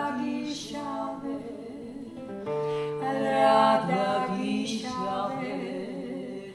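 Two women's voices singing a Georgian city song together, holding long notes in harmony over a strummed acoustic guitar.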